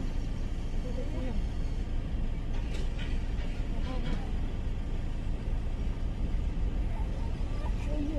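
A steady low rumble throughout, with a few faint words from voices about four seconds in and brief light clicks around three seconds.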